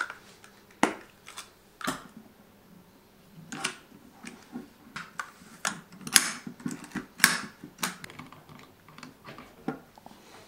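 Hands unwrapping a roll of 35 mm film and loading it into a Voigtländer Vitoret camera: irregular sharp clicks and short rustles of packaging and camera parts, loudest a little past six seconds and again just past seven.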